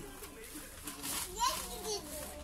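Quiet, indistinct voices, with one rising vocal sound about one and a half seconds in.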